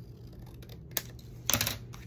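Paper and craft tools handled on a tabletop: one sharp tap about a second in, then a short, louder rattle of clicks and taps half a second later.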